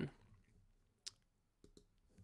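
Near silence with a few faint, short clicks: one about a second in, then two close together a little later.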